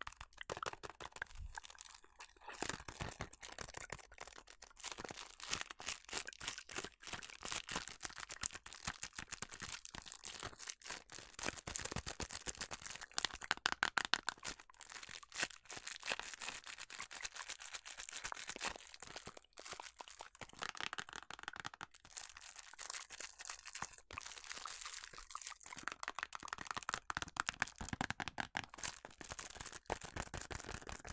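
Long fingernails tapping and scratching fast on a small cardboard food-colouring box: a dense, irregular run of crisp clicks and scratches with brief pauses.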